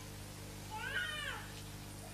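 A single short, high-pitched mewing cry about a second in, rising and then falling in pitch, over a steady low electrical hum in the recording.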